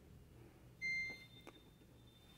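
A single short electronic beep from a Samsung top-loading washing machine's control panel buzzer, acknowledging a button press.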